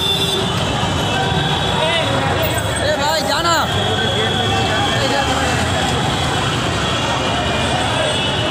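Steady roadway noise with a crowd of people talking and calling out; a few voices shout loudly about three seconds in.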